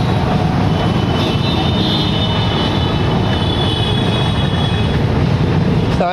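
Three-piston HTP pressure-washer pump, belt-driven by a single-phase electric motor, running steadily with a constant hum and a faint high whine. It is pumping water out of the open hose with no nozzle fitted, as a new pump is run first to purge air before pressure builds.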